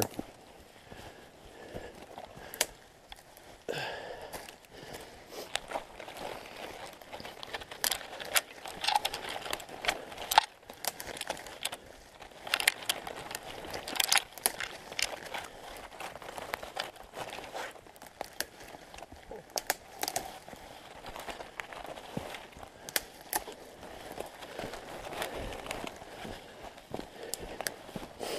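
Dead, dry lower branches of spruce and balsam fir being snapped off and gathered by hand: a scattered series of sharp twig cracks and crackles over brushing and rustling through the branches, with some footsteps in snow.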